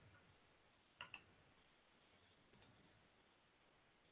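Faint computer mouse clicks against near silence: two quick double clicks, one about a second in and one about two and a half seconds in.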